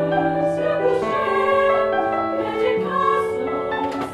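A small mixed choir of men's and women's voices singing in parts, holding long chords that move to new notes every second or so.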